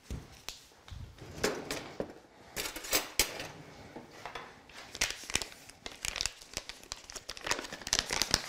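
A paper bag of flour crinkling and rustling as it is handled, in a run of irregular crackly strokes.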